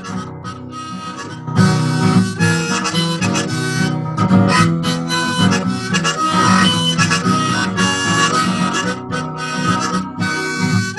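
Harmonica in a neck rack played with acoustic guitar accompaniment, an instrumental song intro that gets louder about a second and a half in.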